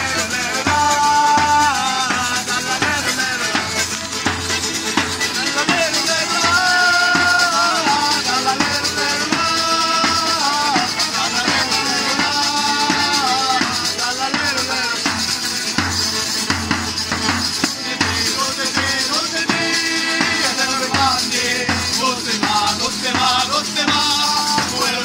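Live Sicilian folk music: men singing together over accordion and acoustic guitar, with a tambourine's jingles shaking steadily on the beat.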